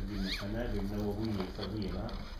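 Indistinct speech: a voice hesitating with drawn-out syllables, with a brief sliding sound about a quarter second in.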